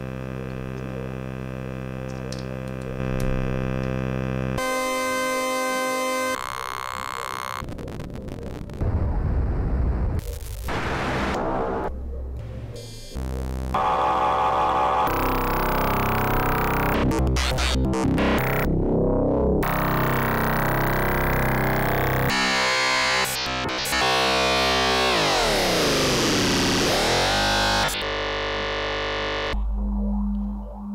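Knit Eurorack digital oscillator module played on its own, stepped through different synthesis types. It starts as a steady buzzy drone, then the timbre jumps abruptly every second or two between chirpy digital textures and noisy, distorted tones. Near the end the pitch falls and rises again.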